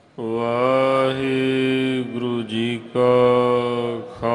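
A man's voice intoning Sikh scripture in long, drawn-out held notes, breaking off briefly partway through and then holding a second long note. It is the granthi's chanted close of the Hukamnama, leading into the salutation 'Waheguru ji ka Khalsa, Waheguru ji ki Fateh'.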